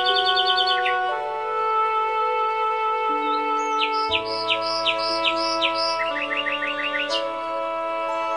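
Slow meditation music of held, sustained chords that shift every second or two, with birdsong mixed in. A rapid trill opens, a run of about eight clear repeated chirps follows in the middle, and a shorter, lower trill comes near the end.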